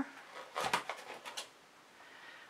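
Several faint taps and knocks in the first second and a half as a small stretched-canvas painting is handled and lifted off a metal wire display rack.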